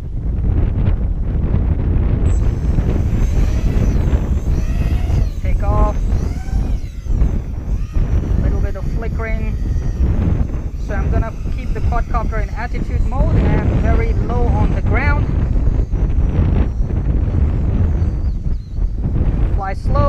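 Small FPV racing quadcopter in flight, its motors whining in runs that rise and fall in pitch with the throttle, under heavy wind buffeting on the microphone.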